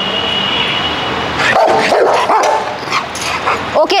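Rottweiler barking excitedly at a ball held up out of reach, loudest in a run of barks about one and a half seconds in.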